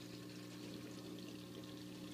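Faint, steady trickle of water running through a newly filled saltwater aquarium's overflow and sump, with a low, steady hum from the circulation pump under it.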